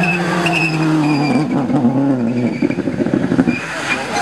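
Subaru Impreza rally car's engine note falling steadily as it brakes hard from speed, then breaking up into rough skidding and scrabbling as the car runs wide off the road onto the bank.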